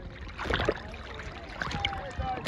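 Sea water lapping and splashing around a camera held at the surface by a swimmer, with a sharper splash about half a second in.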